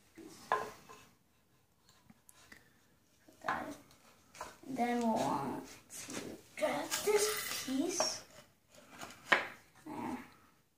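Loose wooden parts of a small catapult frame knocking and clattering together as they are handled and fitted, with a few sharp wood-on-wood knocks, the loudest near the end.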